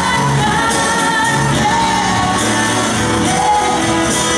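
Live pop-rock band performing: a lead vocal sung into a microphone over acoustic guitar, electric guitar and drums, heard through the stage PA.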